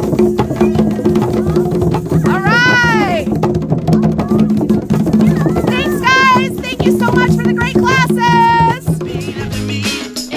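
A group of hand drums, mostly djembes, played together in a steady, dense rhythm by a drum circle of children and adults. High voices call out over the drumming twice: once briefly early on, and again in several calls from about six seconds in.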